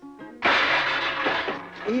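A sudden crash and clatter of objects, starting about half a second in and dying away over about a second, as a plastic grass box is pulled out of a cluttered cupboard. Light plucked-guitar background music plays under it.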